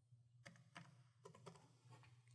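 Faint computer keyboard keystrokes: four keys pressed in about a second as digits of a numeric code are typed, over a faint low hum.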